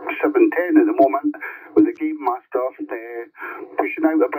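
A voice heard over a CB radio on FM through the receiver's speaker: continuous talk with a thin, narrow tone.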